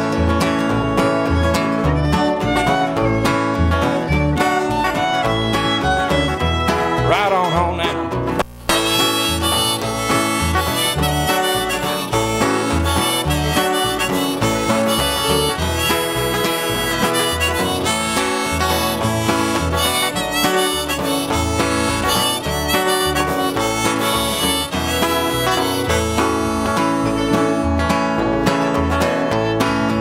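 Instrumental break of a bluegrass band: a bowed fiddle carries the melody over strummed acoustic guitar and plucked upright bass, with no singing. The sound drops out for a split second about eight and a half seconds in.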